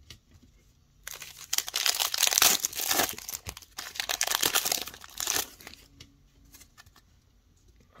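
Foil wrapper of a Donruss basketball card pack being torn open and crinkled, starting about a second in and lasting about four seconds, followed by a few faint clicks of the cards being handled.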